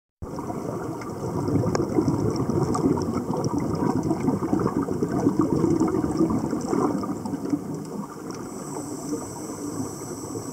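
Scuba divers' exhaled air bubbles gurgling and crackling from their regulators, heard underwater as a dense, irregular bubbling that eases off a little after about eight seconds.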